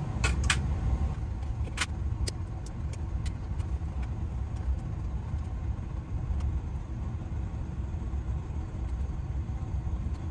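A steady low mechanical rumble, with a few sharp clicks in the first couple of seconds as electrical wires are handled and twisted together in a metal junction box.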